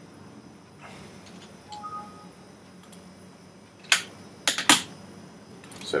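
Sharp clicks of a computer keyboard and mouse, about four in quick succession some four seconds in, over a low steady hum. A faint short two-note tone sounds about two seconds in.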